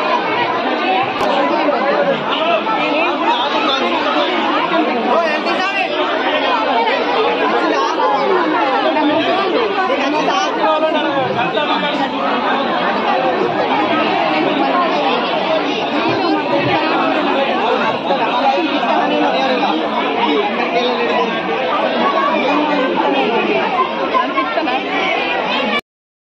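A packed crowd talking all at once: a dense, steady babble of many voices.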